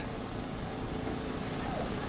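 Steady outdoor street background noise with distant road traffic.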